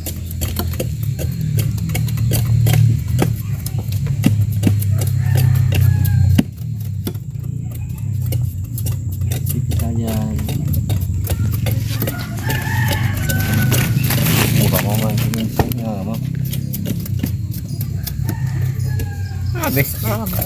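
Machete blade scraping the rind off a sugarcane stalk in many short, repeated strokes, over a steady low hum. A few animal calls come in the middle.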